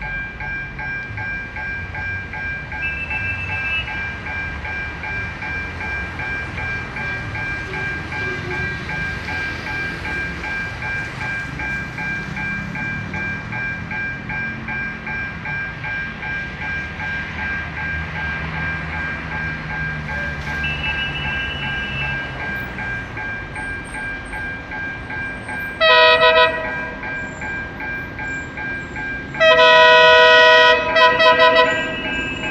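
An approaching commuter train sounds its horn twice near the end: a short blast, then a longer, louder one. Under it there is a low rumble and a steady, pulsing high tone.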